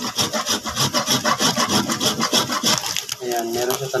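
A long handheld rasp grater scraped back and forth over a solid ball of baked salt, grating it to powder: a quick, even run of gritty strokes that stops about three seconds in.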